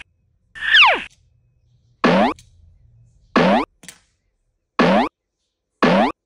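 A series of cartoon boing-style sound effects, five short sliding zips about a second apart. The first glides down in pitch and the other four glide up. They go with the toys vanishing from the tin one by one.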